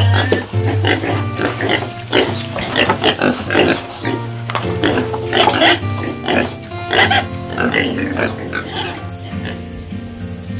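Pigs grunting in a quick string of short, irregular calls, an added sound effect over background music.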